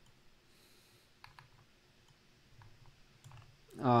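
A few faint, scattered clicks from a computer mouse as the comic page is scrolled.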